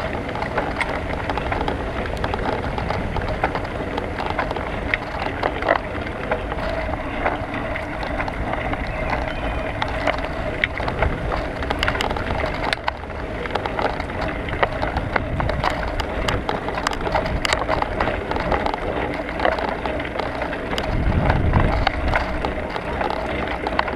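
Bicycle rolling over a rough path and concrete paving slabs, picked up by a handlebar-mounted action camera: steady tyre and wind noise with frequent small rattles and knocks from bumps. A low rumble swells near the end.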